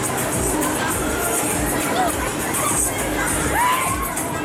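Riders on a spinning fairground thrill ride screaming and shouting over loud fairground dance music with a steady beat, with one rising scream near the end.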